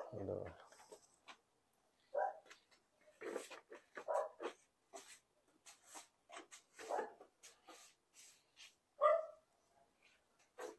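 A handful of short vocal calls, one every second or two, the loudest at the start and near the end, over faint crinkling of plastic grafting tape being stretched and wrapped around a stem.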